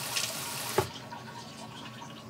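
Kitchen sink tap running on its spray setting, water streaming into a sink. The rushing cuts off abruptly a little under a second in, leaving only a faint hiss.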